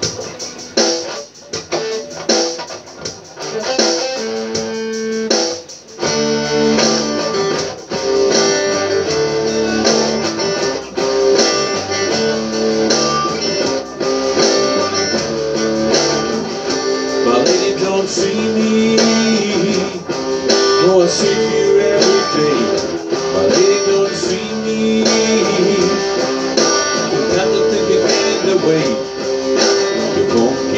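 White Stratocaster-style electric guitar played through an amp as a song's instrumental intro: sparse notes at first, then from about six seconds in a fuller, steady part with a bass line joining underneath.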